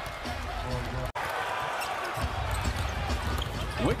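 Basketball arena sound on a game broadcast: crowd noise and a ball bouncing on the hardwood, with arena music underneath. The sound drops out sharply for an instant about a second in.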